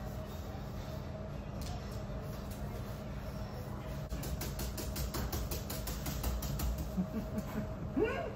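Gloved hands scrubbing soap into a wet dog's coat: a regular rubbing of about four strokes a second that starts about halfway in, over a steady low hum.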